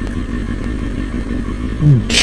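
2003 Kawasaki ZX-6R 636's inline-four engine idling steadily while the bike stands at a stop.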